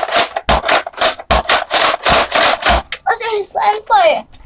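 Loud rubbing and scraping handling noise, with a few low thumps, as a plastic Nerf blaster is moved about right against the phone's microphone; a child's voice comes in near the end.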